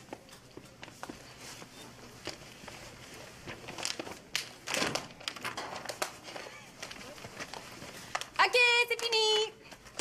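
Quiet rustling and handling noises, glossy paper being handled and pressed, with a louder rustle about five seconds in. Near the end, a brief high-pitched hummed 'mmm' from a voice, in two short parts.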